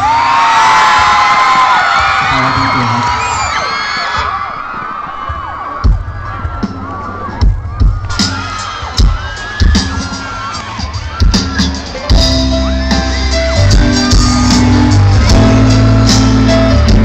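Crowd of fans screaming and cheering loudly, strongest in the first four seconds, over a live rock band. From about six seconds in, single drum hits land roughly once a second, and about twelve seconds in the full band with bass and drums comes in together.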